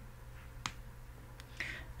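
A single sharp click about two-thirds of a second in, over a faint steady low hum, with a short breath near the end.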